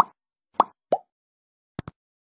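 Sound effects of an animated like-and-subscribe button: three short popping blips in the first second, then a quick double mouse click near the end.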